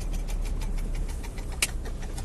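Car interior noise while driving slowly on a dirt road: a steady low rumble of engine and tyres, with one sharp click about one and a half seconds in.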